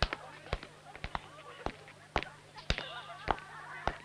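Schoolyard background of distant children shouting and playing, with sharp knocks about every half second.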